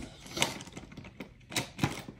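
A few sharp clicks and taps from stationery supplies being handled on a desk, the strongest about half a second in and a close pair near the end.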